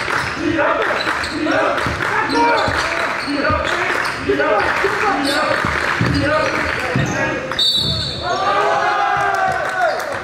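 Basketball dribbled on a hardwood gym floor, with players' and spectators' voices echoing in the gym. Near the end the voices swell into shouting.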